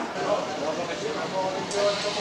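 Background chatter of many shoppers and stallholders in a busy indoor market hall: overlapping voices with no single clear speaker.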